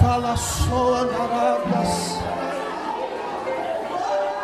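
Live gospel band music playing without singing: sustained keyboard chords over bass and drums, with a low drum thump right at the start and two short bursts of cymbal-like hiss in the first half.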